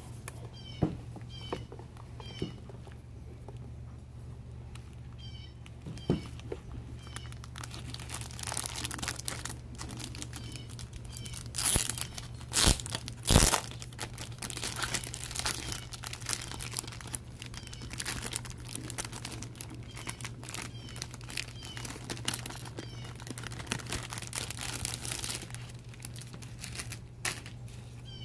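Clear plastic wrapping being peeled and crinkled off the contents of a cardboard box, with handling rustles and clicks. The crackling is loudest about twelve to thirteen seconds in.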